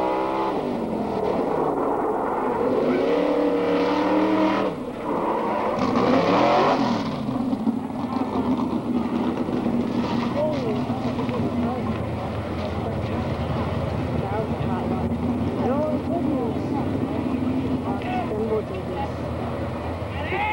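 A drill team fire truck's engine revving up and down hard for the first several seconds, then held at a steady high speed for the rest while its pump throws a hose stream, with brief shouts over it.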